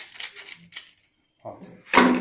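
Coarse cloth-backed sandpaper (36 grit) being peeled off a glued nylon sanding drum: a short ripping rasp at the start that dies away within about half a second.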